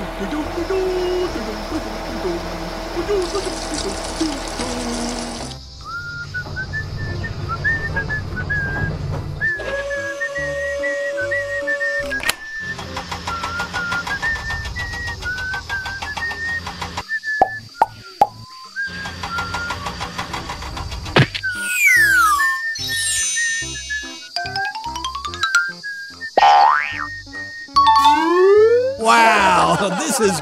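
Playful children's background music carrying a high, thin melody line. In the last several seconds come cartoon sound effects: sliding pitch glides, up and down, and boings.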